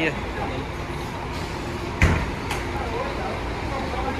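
A coach's luggage bay door shut about two seconds in: one sharp thump, then a lighter knock, over the steady low rumble of an idling diesel coach.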